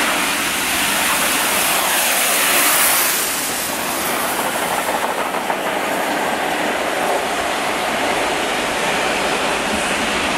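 Double-headed steam locomotives 70000 Britannia and 46100 Royal Scot passing at speed with their train, loudest about three seconds in with a falling pitch as the engines go by. The coaches then rattle past with wheels clacking, a diesel locomotive on the rear goes by about six seconds in, and the noise fades as the train moves away.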